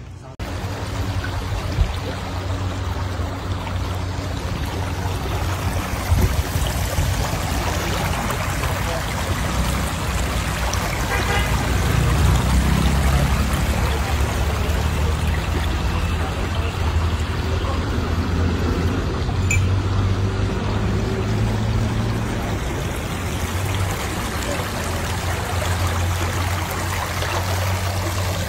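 Water of a shallow stream flowing steadily over stones, a continuous rushing with a low rumble underneath.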